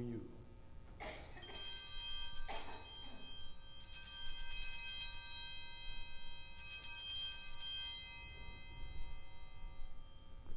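Altar (sanctus) bells rung three times at the elevation of the host during the consecration. Each ring is a peal of several high bells together that rings on and fades, the first starting about a second in.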